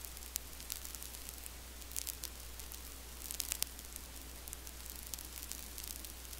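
Faint steady hiss over a low electrical hum, with a few short crackling clicks, the loudest about two and about three and a half seconds in. No race engines are heard.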